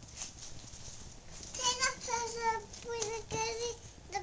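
A young child's high voice singing a few held, wordless notes, starting about one and a half seconds in.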